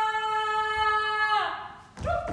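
A voice holding one long, steady high sung note that slides down in pitch and dies away about one and a half seconds in.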